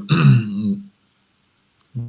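A man's short hesitating vocal sound lasting under a second, followed by a pause of about a second before speech resumes.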